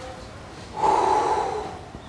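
A person's short, breathy vocal sound, lasting just under a second. It starts about three-quarters of a second in, then fades away.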